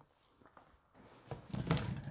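Near silence for about a second, then faint kitchen handling noises growing slightly louder toward the end.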